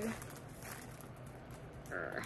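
Quiet handling of a small plastic bag of rhinestones, with a few faint crinkles.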